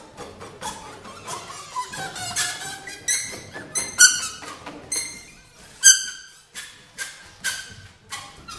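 Free-improvised acoustic music: a run of sharp, ringing hits with bright high overtones, the loudest about four and six seconds in, after short sliding pitched tones in the first two seconds.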